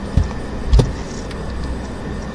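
Steady low background hum with two short knocks, the second about half a second after the first.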